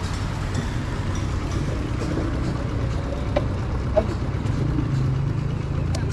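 Small motorcycle engine idling steadily, a low even hum, with a couple of faint clicks about three and four seconds in.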